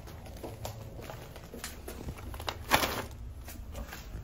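Footsteps on a concrete walkway and a cardboard package being set down on a doormat, with a short rustling scrape just under three seconds in, the loudest sound.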